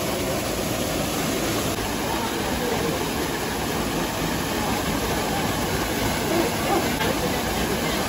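Small waterfall pouring into a rock pool: a steady rush of splashing water.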